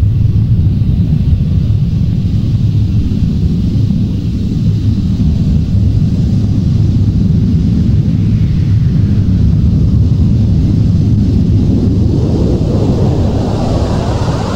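Loud, steady low rumbling noise with no beat, tune or voice, a sound effect within a rock album track; near the end it grows brighter as higher sounds build in.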